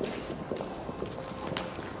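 Footsteps of people walking on a staircase: a handful of separate steps, with a faint steady hum underneath.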